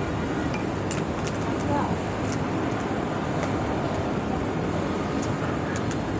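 Steady background noise with faint voices and a few light clicks.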